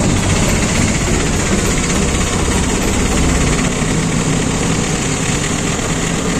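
Auto-rickshaw engine running with a steady, rapid throbbing rumble, heard from inside the open passenger cabin along with road and wind noise; the low rumble eases a little about halfway through.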